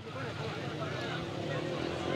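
Busy street background noise in a pause between words: a steady low rumble with faint distant voices.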